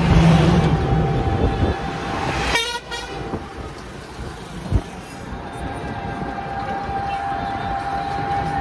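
Riding in an open electric rickshaw: road and wind noise with a steady whine, a short horn toot a little under three seconds in, and a single thump near five seconds.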